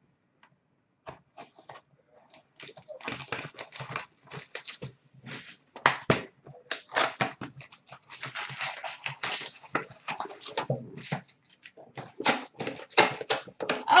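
A box of hockey cards and its foil packs being opened by hand: cardboard and wrappers crinkling and tearing in quick, irregular bursts that begin about a second in and grow busier.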